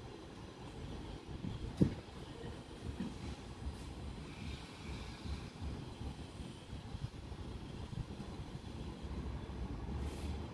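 Low, uneven outdoor rumble, with a single short knock about two seconds in.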